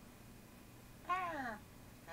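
A single short vocal sound about a second in, half a second long, rising briefly and then falling in pitch.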